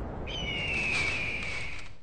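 Cartoon sound effect for an empty hollow space: a thin whistle that starts a moment in and slowly slides down in pitch over a soft hiss, fading out just before speech resumes.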